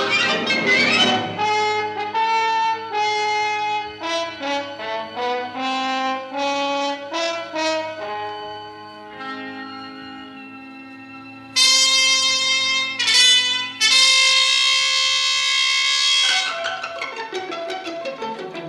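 Orchestral theme music with brass. A run of short melodic notes gives way, about two-thirds of the way through, to a loud held brass chord that swells twice, then dies down near the end.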